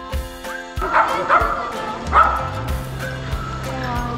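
Dogs barking and yipping a few times, loudest about a second in and just after two seconds, over background music.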